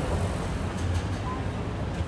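City street traffic: a steady low rumble of vehicle engines under general street noise.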